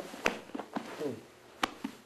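Two sharp slaps or taps, about a second and a half apart, with a few fainter taps and cloth rustle between, from grapplers' hands during a jiu-jitsu drill. A man's voice counts "two" between them.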